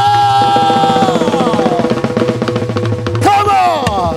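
A man's long held shout into a microphone, sliding down in pitch after about a second, over a live band's fast drum roll and a sustained keyboard chord; a second shout begins near the end.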